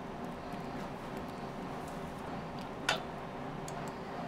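A metal spoon clinks once against a stainless steel pot about three seconds in, over a steady low hum with faint small ticks.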